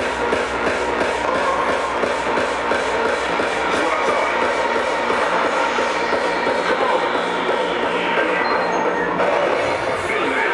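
Loud hardcore dance music from a festival sound system, recorded from within the crowd. A fast kick-drum beat in the first second or two gives way to a stretch without the beat, and the highest frequencies drop away near the end.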